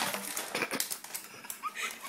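Trading cards and their cardboard deck box rustling and clicking in the hands as the cards are pulled out, some slipping loose and falling onto the table.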